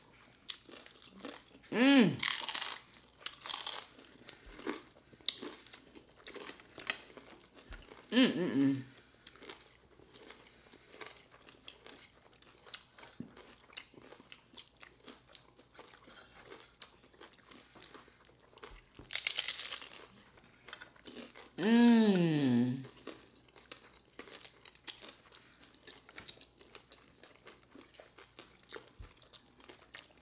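Close-miked crunching and chewing of hard-shell tacos: many small crisp cracks, with a few louder bites. Three drawn-out 'mmm' hums of enjoyment, each falling in pitch, come near the start, about a quarter in and about two-thirds through.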